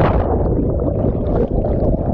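Seawater heard from underwater just after a person plunges in from a jump: a dense, muffled rushing and bubbling of churned water and air bubbles around the submerged action camera.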